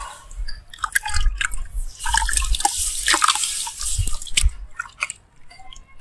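Hands crushing a lump of brown sand under water in a tub, with sloshing water and gritty crumbling in bursts for about four and a half seconds. Near the end it falls to a few faint drips and pops.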